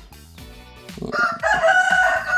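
A rooster crowing: one long, steady call that starts about a second in.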